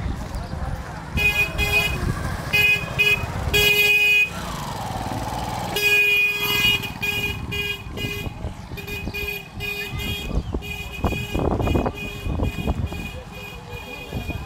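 A horn beeping in rapid short toots, on one unchanging pitch, in repeated bursts through most of the stretch.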